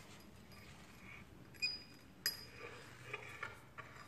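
Plastic fork clinking lightly against a small bowl, a few faint, sharp taps with a brief ring, the two clearest around the middle.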